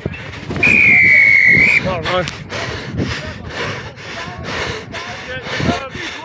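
Referee's whistle blown once near the start, a single held blast of about a second and the loudest sound here. After it come the steady thuds of the camera-wearing player's running footfalls, about two or three a second, with breathing and distant voices.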